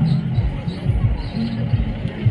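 Fast, regular low thumping, about four beats a second, with faint voices behind it.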